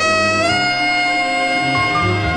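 Jazz saxophone playing a slow ballad: it steps up to a new note about half a second in and holds it as one long tone, with bass notes moving beneath.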